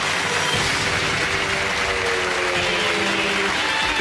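Studio audience applauding over a game-show music sting of long held chords, marking the drawn Thunderball number.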